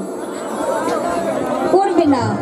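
People talking over a stage PA system, with crowd chatter behind.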